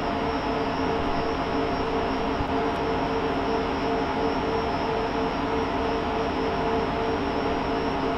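Rack server cooling fans running: a steady whir with a constant hum and a faint high whine in it.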